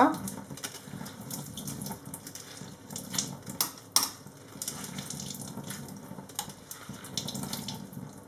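Wet sauerkraut squeezed hard by hand in a stainless-steel sieve, its water splashing and dripping out into the sink. A couple of sharp clicks come in the middle.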